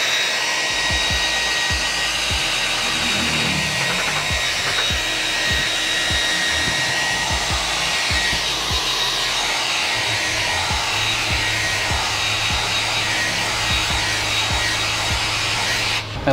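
Handheld hair dryer running steadily with a thin whine, blowing hot air to warm 3M adhesive tape before it is pressed down.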